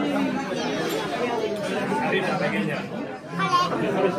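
Restaurant dining-room chatter: many overlapping voices talking at once, with a nearby voice standing out briefly near the end.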